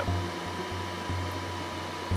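Steady low hum with a thin, constant high-pitched tone: cockpit background noise with the panel's avionics switched on.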